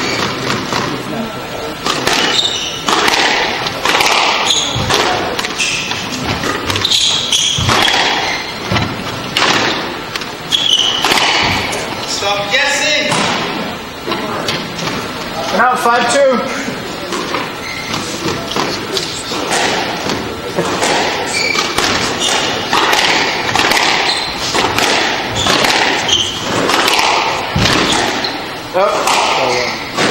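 Squash rallies: repeated sharp hits as the ball is struck by racquets and rebounds off the walls of a glass-backed court.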